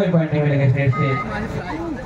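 A man's voice talking in Hindi kabaddi commentary, with a short steady beep-like tone about a second in.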